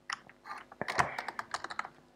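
Computer keyboard keys clicking in a short run of quick keystrokes as a terminal command is typed.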